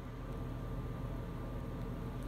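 Steady low hum with a faint hiss of room background noise, with no distinct sound events.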